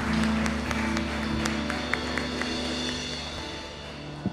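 Church band holding a sustained closing chord that slowly fades, with a few scattered claps.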